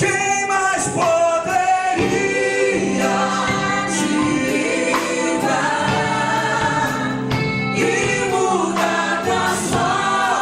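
Live gospel song: a male lead singer with backing vocals, accompanied by electric guitar and keyboard, over a steady beat.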